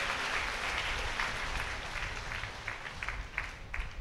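Audience applause dying away, thinning to a few scattered single claps near the end.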